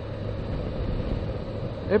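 Suzuki Bandit inline-four motorcycle running steadily at cruising speed on the open road, its engine hum mixed with a constant rush of wind over the bike and the microphone.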